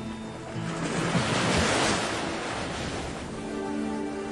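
Soundtrack music with a long swell of rushing noise in the middle that rises and falls over about two and a half seconds, like a wave washing in. The music's notes thin out under it and come back near the end.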